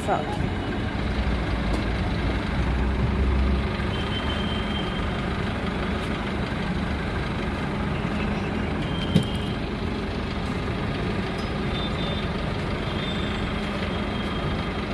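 Minibus engine idling steadily, a low even hum with a deeper rumble in the first few seconds. A few short, faint high beeps and one brief click sound over it.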